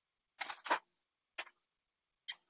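A few short clicks over an open microphone: two close together about half a second in, then a single one about a second later, with dead silence between them.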